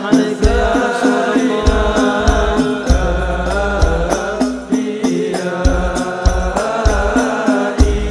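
Male voices singing a sholawat, an Arabic devotional song, in a flowing melismatic melody. Hand drums keep a steady beat of sharp slaps, with deep bass-drum thumps under them.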